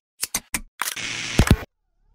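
Camera-shutter-style sound effect for a logo: a few sharp shutter clicks in the first half second, then about a second of rattling shutter noise ending in two sharp clicks.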